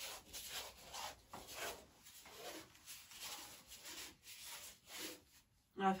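Wide paintbrush rubbed back and forth across a primed canvas, working wet paint in: repeated scrubbing brush strokes, a few a second, that stop just before the end.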